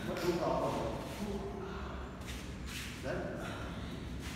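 Indistinct men's voices talking, with no other clear sound.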